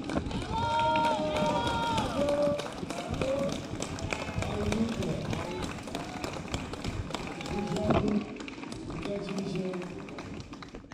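Spectators' voices calling out, some drawn-out shouts, over a runner's footsteps on pavement. A single sharp smack about eight seconds in is the loudest sound.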